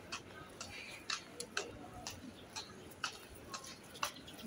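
Footsteps on a paved sidewalk, sharp regular steps about two a second at walking pace, over faint street background.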